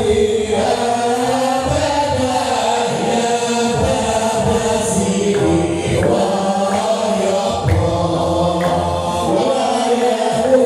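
Hamadsha Sufi brotherhood chanting: a group of men's voices singing together in long, sustained lines that slowly rise and fall in pitch.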